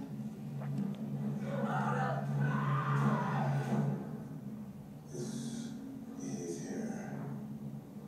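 Drama trailer soundtrack playing through a television's speakers: a low, steady droning score with faint dialogue in the first half and short breathy hisses later on.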